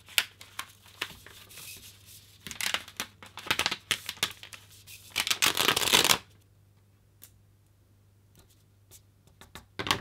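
Paper crinkling and rustling as dried hot-glue tree and bird shapes are peeled off a sheet by hand, in irregular crackly bursts that are loudest about five seconds in, then only a few faint ticks.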